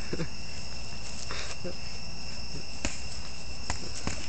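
Crickets chirring in a steady, high, unbroken drone. Two short clicks come in the second half.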